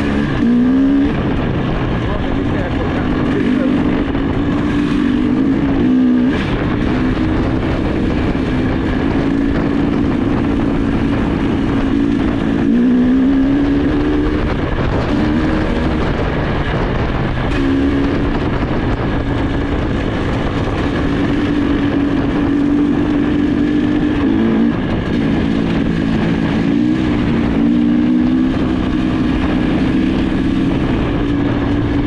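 Trail motorcycle engine running under load while riding, its pitch stepping and rising with throttle and gear changes, with several revs about a second in, around 13 s, and near 25 and 27 s, over a low rumble.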